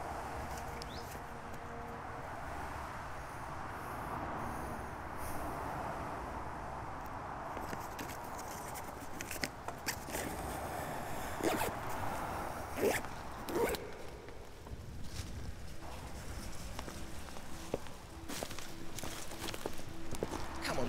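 Footsteps of several walkers on a tarmac road, irregular steps growing clearer from about halfway through, over a steady background hiss.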